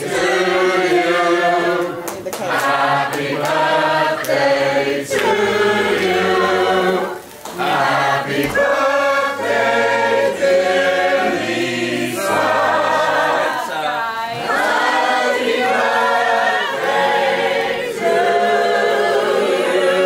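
A group of people singing a song together, unaccompanied, with many voices at once.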